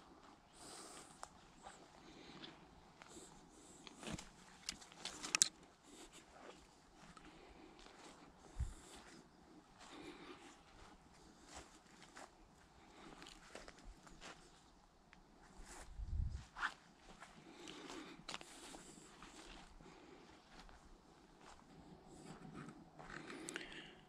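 Faint footsteps and rustling through leaf litter and undergrowth on a forest floor, with a few sharper clicks of twigs or brush, loudest around four to five seconds in.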